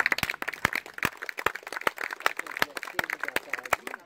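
Scattered hand-clapping from a small group of people, the separate claps distinct and irregular, with a few voices under it.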